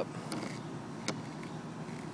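A few faint clicks and creaks of a brass garden-hose coupling being turned by hand onto a PVC hose adapter, the sharpest about a second in.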